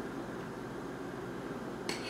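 Quiet room tone, then near the end a single short clink of a metal utensil against a glass jar as a marinated mushroom is fished out of it.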